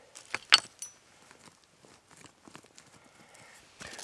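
Small stones clicking together and loose dirt scraping under a hand digging in a rocky soil pocket, with a couple of sharp clicks about half a second in and light scratching after.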